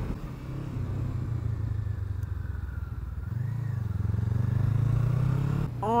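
Honda CBR500R's parallel-twin engine running while riding. About halfway through, the engine note wavers, then rises steadily as the bike accelerates, and drops suddenly just before the end.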